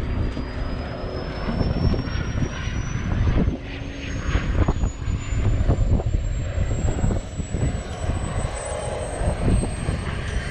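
A model jet turbine engine whining, its high pitch climbing slowly and steadily as it spools up, over a loud low rumble.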